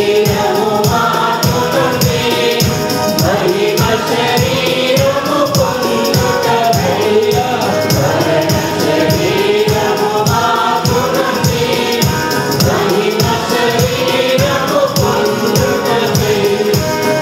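A mixed choir singing a Telugu Christian hymn together, with electronic keyboard accompaniment and a steady percussion beat.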